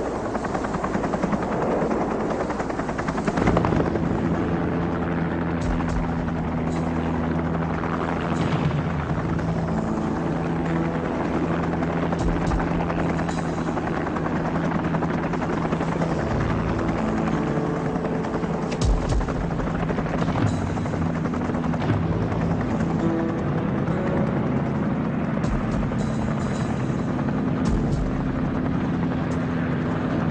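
Helicopter running steadily, with background music of sustained low notes laid over it.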